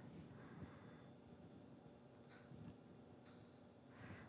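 Near silence: room tone, with two faint, brief scraping or handling noises in the second half.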